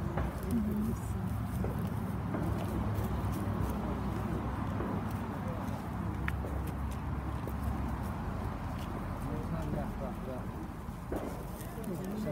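Indistinct chatter of people gathering outdoors, with a steady low rumble and the rustle and clicks of a handheld microphone being carried along.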